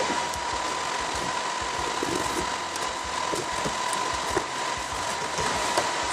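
Server cooling fans running flat out during a server install: a steady rushing hiss with a thin steady whine, broken by a few faint knocks.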